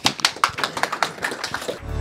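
A small group of people clapping: quick, uneven claps that thin out slightly towards the end.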